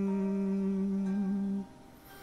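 A singer holding the final sung note of a karaoke line on one steady pitch. The note cuts off about one and a half seconds in.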